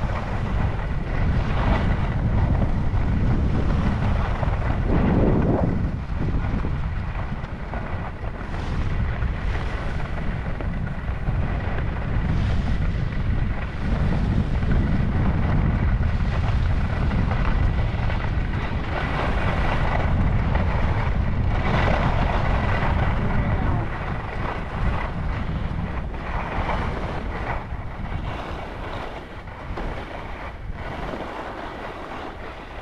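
Wind buffeting a skier's camera microphone while skiing downhill, with the skis hissing and scraping over packed snow in repeated surges as turns are carved. The rush eases off over the last several seconds as the skier slows.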